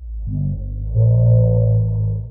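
A man's voice slowed far down into a deep, drawn-out droning tone that starts abruptly and gets louder about a second in.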